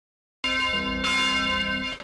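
Church bells ringing, starting about half a second in, with fresh strikes following quickly, then cut off abruptly.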